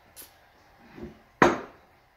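A light knock of a plastic cup coming down on a kitchen counter and a sharp, breathy gasp ("uh") after a gulp of drink taken to cool a hot-sauce burn. The gasp, about one and a half seconds in, is the loudest sound.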